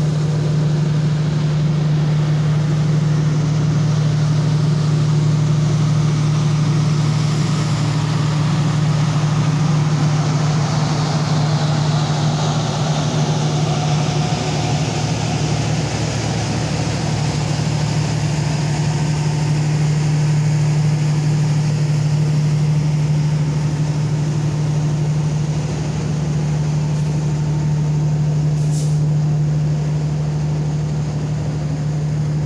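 A diesel-hauled passenger train's coaches rolling slowly past, with the wheels rumbling on the rails over a steady, unchanging low drone of diesel engines. A short high hiss comes about two seconds before the end.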